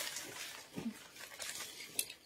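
Faint rustling of a length of chiffon silk fabric being handled and folded, with one short, low falling sound a little before a second in.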